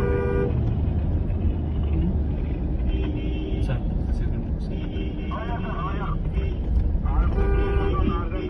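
Low rumble of a moving car heard from inside the cabin in city traffic, with car horns honking in several short blasts, every two to three seconds.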